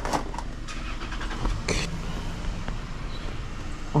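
A car running nearby: a steady low engine rumble, with a brief hiss a little under two seconds in.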